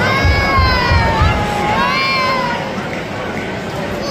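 A long, high-pitched shout from a spectator, held for about two and a half seconds with its pitch dipping and rising, over the murmur of a small football crowd. Another call starts right at the end.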